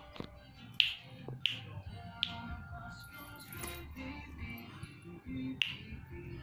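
Finger snaps keeping time to a song playing in the room: three sharp snaps about two-thirds of a second apart in the first seconds, then another near the end.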